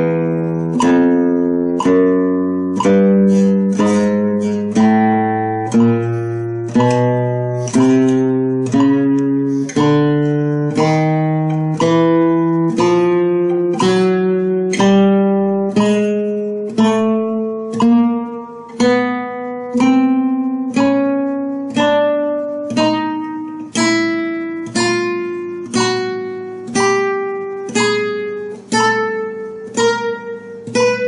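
Nylon-string flamenco guitar playing a slow chromatic scale exercise, single notes plucked one at a time about once a second, each left to ring. The notes climb step by step in pitch.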